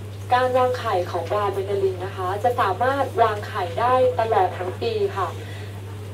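A woman speaking Thai through a microphone, over a steady low hum.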